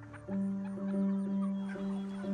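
A held low musical note with faint clucking of poultry over it.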